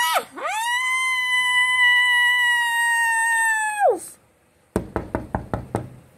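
A long, high-pitched scream held steady for about three and a half seconds, dropping off at the end. Then, after a brief pause, a quick run of about eight knocks, a knock at the door.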